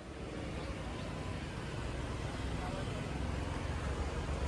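Road traffic on a busy city street: a steady rumble of passing cars and scooters that fades in at the start and slowly grows louder.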